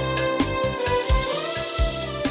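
Manele music on an electronic keyboard: a sustained synth lead melody that bends up in pitch about one and a half seconds in, over a steady kick-drum beat and bass.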